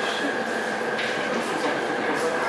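Steady background hum and hiss with a constant high tone running through it, and a single sharp click about a second in.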